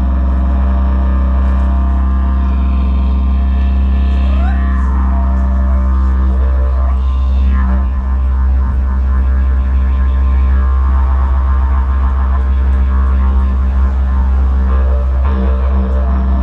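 Didgeridoo played as one unbroken low drone with no pause for breath. Its overtones sweep up and down twice, about four and seven seconds in.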